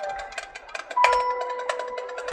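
Marching band front-ensemble mallet percussion playing: quick light strokes with ringing bell-like tones, and a new chord struck about a second in that rings on.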